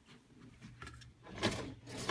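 A storage drawer under an IKEA bed being moved: one short sliding scrape about one and a half seconds in, after a quiet stretch.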